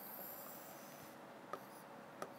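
Marker pen drawn across a whiteboard: faint squeaky rubbing as a long straight line is drawn, with a light tap about one and a half seconds in.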